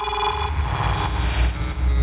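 Electronic intro sound design: a dense wash of static-like noise over a heavy deep rumble, with a few steady electronic tones, glitch effects for an animated title sequence.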